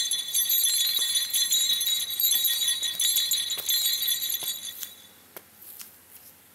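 A high, shimmering jingle of bell-like chimes that cuts off about five seconds in, followed by a few faint clicks.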